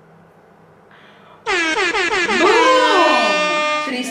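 Air horn sound effect cutting in suddenly about a second and a half in, loud, its pitch sliding down at first and then holding steady until near the end.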